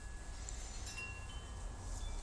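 Faint chime ringing: a few thin, high, sustained tones start about a second in, over a low steady hum.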